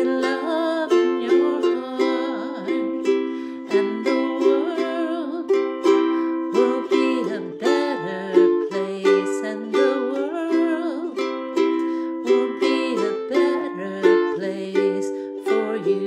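Carbon-fibre ukulele strummed in a steady rhythm, the chords changing every second or two.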